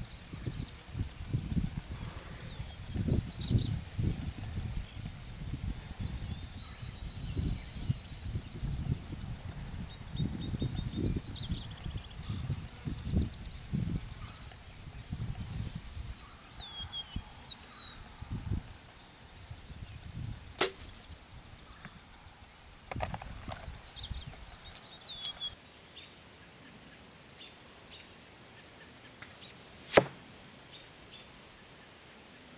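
Birds singing a repeated trilled song over low rumbling on the microphone; about twenty seconds in, a single sharp snap of the Rytera Alien X compound bow being shot at a 100-yard target.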